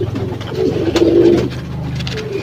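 Racing pigeons cooing in their loft: low, throaty, wavering coos, loudest from about half a second to a second and a half in.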